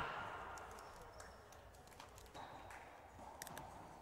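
Faint room sound of an indoor racquetball court between rallies, with a few light ticks and taps scattered through it.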